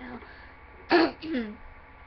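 A girl clears her throat once, sharply, about a second in, followed by a short falling hum of her voice.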